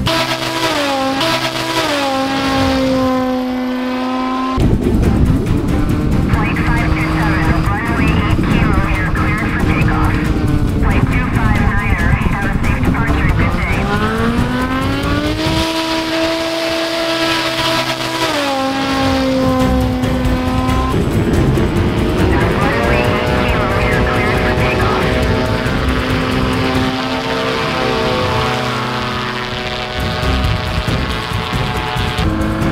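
Light propeller-driven STOL aircraft engines running at high power. The engine note rises and falls several times as the planes throttle up for takeoff and climb past.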